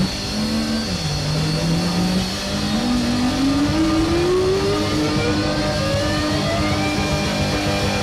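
Synthesizer tone that dips in pitch about a second in, then glides slowly and steadily upward over several seconds, like an engine revving, with other held notes beneath it.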